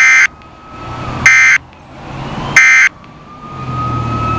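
Three short, loud bursts of SAME (Specific Area Message Encoding) digital data from a weather radio broadcast, each about a third of a second long and about 1.3 seconds apart. Their short length marks them as the end-of-message code of the alert test.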